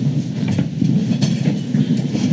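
Meeting-room bustle as people sit back down: chairs shuffling and scraping, with a few knocks and clatters.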